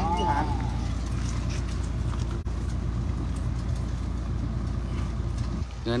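Concrete mixer truck's diesel engine running steadily with a low hum while its drum discharges concrete down the chute; the engine sound drops a little near the end.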